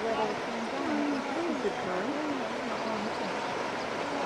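Steady rush and splash of river water as zebras and wildebeest swim and plunge across, with indistinct voices talking over it.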